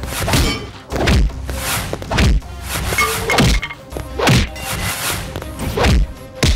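Film fight sound effects: a string of about eight heavy punch whacks and thuds, one every half second to a second, over background music.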